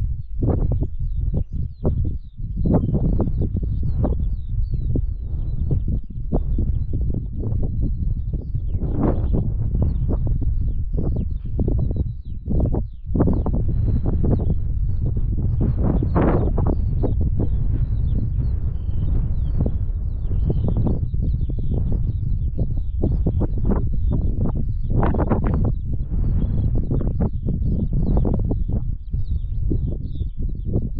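Birds chirping over a loud, continuous low rumble.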